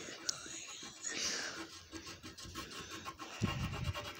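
Wax crayon scratching quickly back and forth on paper as a drawing is coloured in, with a soft low bump near the end.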